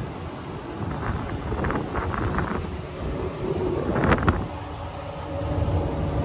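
Boat's outboard motors running at low speed with wind on the microphone, a steady low rumble, with a brief louder rush about four seconds in.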